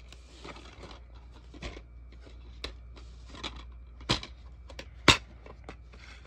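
Plastic DVD cases being handled and one snapped open: scattered light clicks and taps, with two sharper snaps about four and five seconds in.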